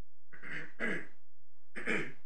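A person clearing their throat: two short bursts about half a second in, then a third near the end, over a steady low hum.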